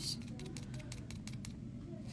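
A few faint, light ticks from a small plastic spatula tapping as acrylic powder is sprinkled over its jar onto a nail, over a low steady room hum.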